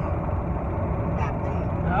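Steady low rumble of road and engine noise inside a moving car's cabin, with a faint voice briefly about halfway through.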